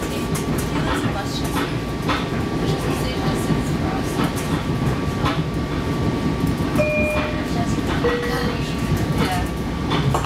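Inside a moving Long Island Rail Road electric commuter train: the steady rumble of the car's wheels on the rails, with irregular clicks from the track and a thin steady whine throughout. A few brief squeals or tones come in between about seven and eight and a half seconds in.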